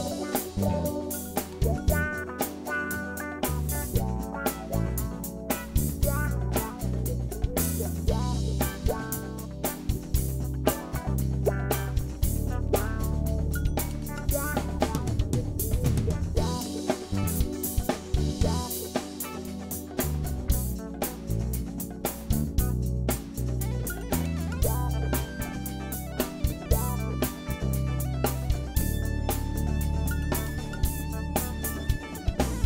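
Background music: a drum kit beat with guitar and a moving bass line, steady throughout.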